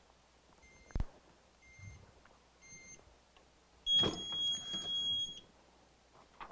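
Hotronix Fusion heat press timer counting down the final press: three short beeps about a second apart, then a long steady beep as the time runs out, with a clatter as the press is opened. A low thump comes about a second in.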